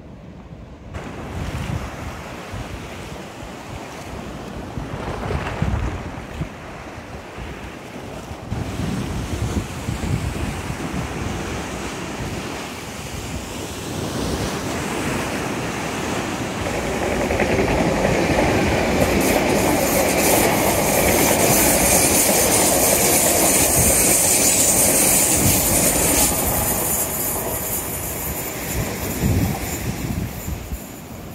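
A Great Western Railway Intercity Express Train running on the seawall railway line, mixed with waves breaking on the shore and wind on the microphone. The sound grows loudest a little past the middle, then eases off.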